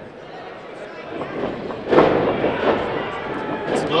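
A sharp impact in a wrestling ring about two seconds in, over voices and the hall's background noise.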